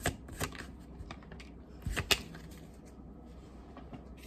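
Tarot cards being shuffled by hand, a run of sharp card snaps and slaps. It is loudest in a quick cluster about two seconds in, then dies down to faint handling.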